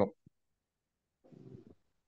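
A man's voice finishes a word, then near silence on the call line, broken only by one faint, short, muffled noise about one and a half seconds in.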